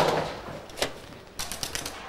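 Sharp clicks and knocks: one at the start, another just under a second in, then a quick run of several clicks about a second and a half in.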